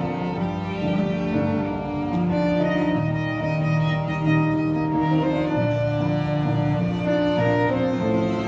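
Violin, cello and keyboard trio playing a slow instrumental piece: the violin carries the melody in long held notes over sustained cello bass notes.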